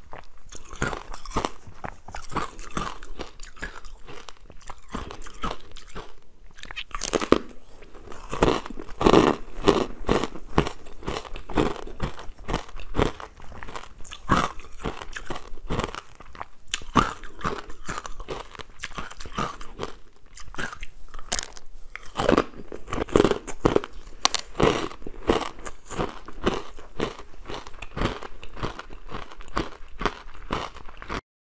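Close-miked biting and chewing of frozen ice, a dense run of irregular crunches with louder clusters of bites about a quarter of the way in and again past two-thirds.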